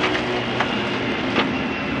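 Lada 21074 rally car's engine failing: its steady running note fades out about half a second in, leaving road and tyre noise with mechanical clatter and two sharp knocks as the car rolls on. The crew take it for the engine blowing apart.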